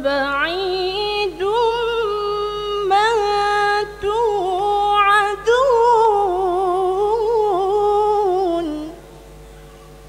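A woman reciting the Quran in the melodic tarannum style, unaccompanied. Her single voice draws out a long line full of small turns and wavers in pitch, and stops about nine seconds in.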